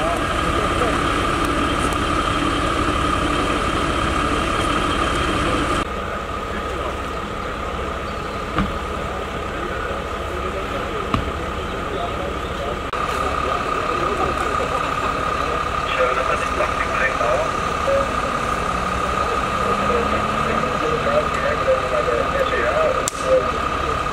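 Diesel fire engine idling steadily, a low rumble with a steady high whine over it, quieter for a stretch between about six and thirteen seconds in. Indistinct voices mix in over the later part.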